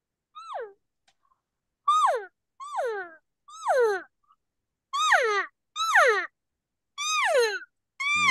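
Diaphragm reed elk call blown by mouth, giving seven short mews like elk cow-calf calls, each sliding down in pitch. The first is faint and the rest come much louder as the lips open to add volume.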